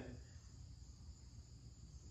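Near silence: room tone with a faint, steady high-pitched hiss.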